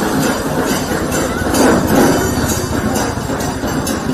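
Loud rhythmic clatter of procession percussion with jingling bells, beating steadily.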